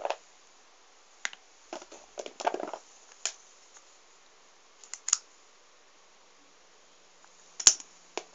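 Small novelty erasers of rubber and plastic clicking and clattering against each other as they are picked up and handled. The sounds come in scattered bits, with a short rattling run about two seconds in and one sharp click near the end.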